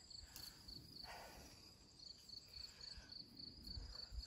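Faint, high-pitched insect chirping, most likely a cricket, repeating steadily at about three chirps a second in near quiet.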